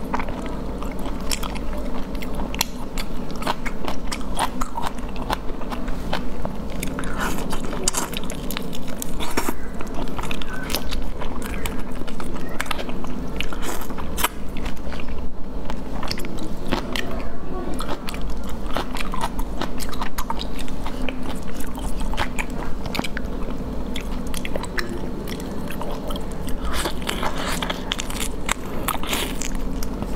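Close-miked mouth sounds of eating marinated whole shrimp: a dense run of short wet clicks and smacks from biting, sucking and chewing, over a steady low hum.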